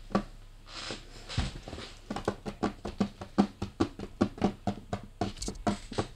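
Slime being squeezed and pressed flat by hand on a tabletop. From about two seconds in it makes a quick, even run of small clicking pops, about five a second.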